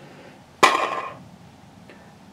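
Candy Land's plastic spinner arrow flicked once about half a second in: a sharp plastic click followed by a brief whir that dies away within half a second.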